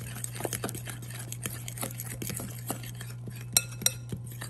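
A metal fork stirring wet banana-and-egg pancake batter in a glass bowl: a steady run of quick taps and scrapes, with two sharper ringing clinks of the fork against the glass near the end.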